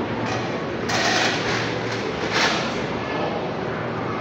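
Steady rushing hiss of water and air in aerated live-fish tanks, with two louder hissing surges, one about a second in and a shorter one about two and a half seconds in.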